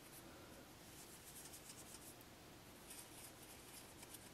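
Near silence with faint, scratchy rubbing in a few short strokes: fingertips swiping over pressed eyeshadow pans in a palette.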